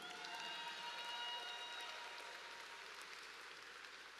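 Audience applauding, swelling about a second in and then fading away.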